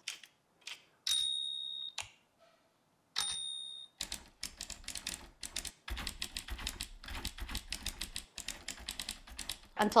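Typewriter sound effects previewed from a phone video-editor's sound library: two bell dings, about a second in and about three seconds in, each ringing for about a second. From about four seconds on comes a rapid, continuous run of typewriter keystroke clicks.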